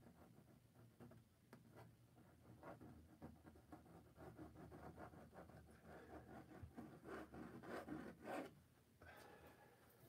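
Faint scraping of a metal palette knife dragged through acrylic paint on a stretched canvas: a run of short, scratchy strokes that grows busier towards the middle and stops about a second before the end.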